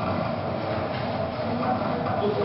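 Arduino-driven stepper motors tugging at stretched rubber bands, a steady, dense rattling.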